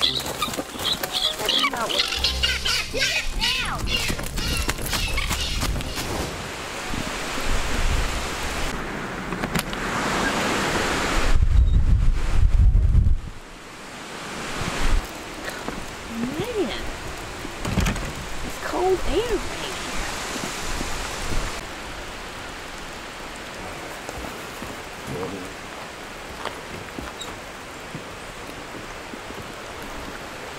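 Hurricane wind and rain, with a loud low rumble of wind for about two seconds near the middle and a few scattered high calls.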